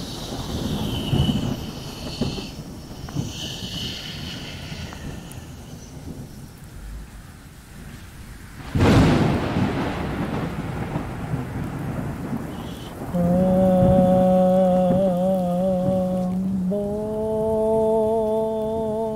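Thunderstorm: rain noise and rumbling thunder, with one sudden loud thunder crack about nine seconds in. From about thirteen seconds a long held droning note with a slight waver comes in, and it steps up to a higher held note about three seconds later.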